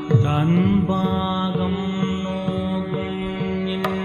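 Carnatic classical music: a male voice slides up into one long held note over a steady drone, with a sharp drum stroke near the end.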